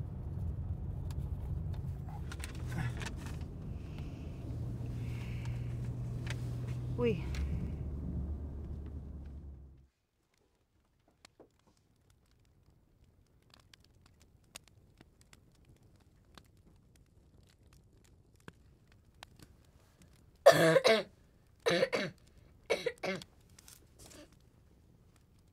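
A low, steady drone cuts off abruptly about ten seconds in. After a near-silent stretch, a person coughs four or five times near the end, short harsh coughs about a second apart, the loudest sounds here.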